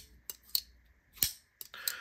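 Benchmade Narrows folding knife's crossbar lock and washer-pivoted blade clicking as the blade is flicked open and swung shut: a handful of separate sharp clicks.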